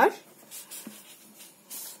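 A pen scratching on paper in short strokes as a formula is written, with a brief rustle of the paper sheet near the end.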